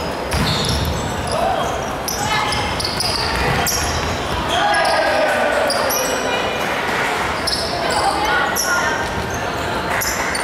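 Basketball game sounds in a large sports hall: sneakers squeaking briefly and often on the hardwood court, players calling out, and the ball bouncing.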